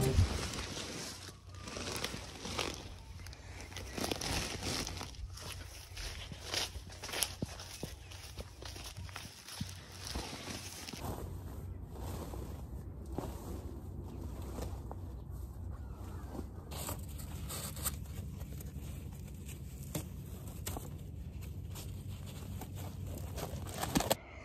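Faint outdoor ambience with a low rumble, scattered rustles and light clicks, like someone moving about and handling things close by.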